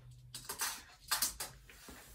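Steel tape measure blade being pulled out along a workbench top, two short scraping rattles about half a second and a second in.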